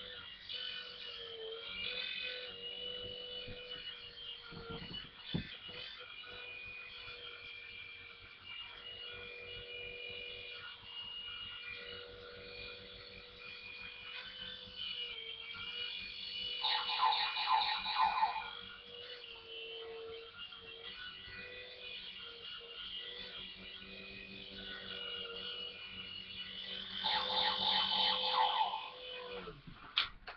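Toy remote-control helicopter in flight: its small electric motors and rotors give a steady whine with a slightly wavering pitch. The whine grows louder twice, about halfway through and again near the end, then falls in pitch as the motors wind down at the very end.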